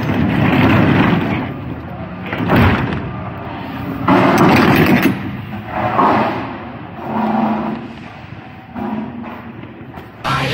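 Semi-trailer rear swing door being handled and shut at a loading dock: one sharp metal bang about two and a half seconds in, with rattling and clattering before and after.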